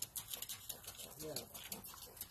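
Steps crunching on gravel, a pony's hooves and a man's feet walking together, heard as a quick run of sharp crackles.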